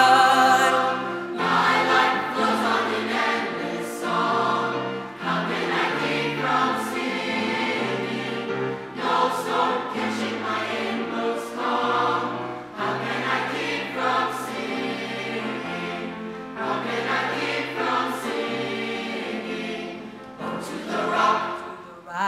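Youth choir singing a hymn arrangement in sustained, many-voiced phrases.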